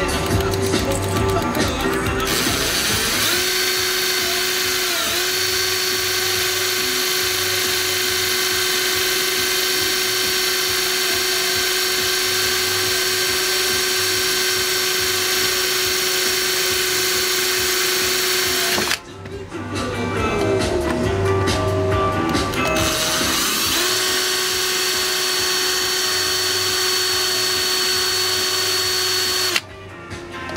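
A cordless drill of about 600 RPM spins a CB radio's rotary channel-selector encoder shaft in an endurance test of the selector, running at a steady whine. It stops about two-thirds of the way through, starts up again and runs steadily until it cuts off just before the end.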